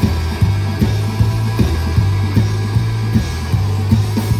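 Live blues band playing an instrumental passage: a steady bass line under an even drum beat of about two and a half hits a second, with electric guitar.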